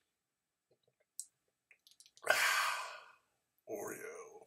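A man's mouth clicks softly a few times, then he lets out a loud breathy sigh lasting under a second, and near the end starts a short voiced sound.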